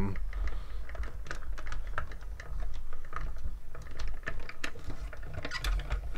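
Hand-cranked die-cutting machine being turned, a rapid, irregular run of clicks and ticks as the plates with a die and cardstock roll through the rollers.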